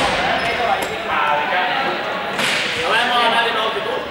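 A ball striking with a sharp smack about two and a half seconds in, echoing in a large sports hall, amid young people's voices and shouts.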